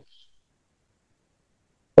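Near silence: a pause between spoken phrases, with a dead-quiet background.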